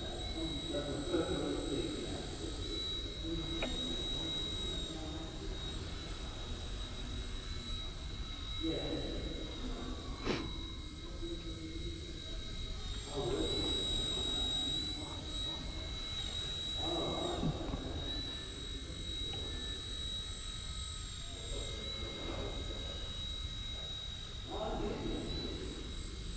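Eachine E129 micro RC helicopter in flight, its electric motor and rotor giving a steady high-pitched whine that wavers slightly as it manoeuvres.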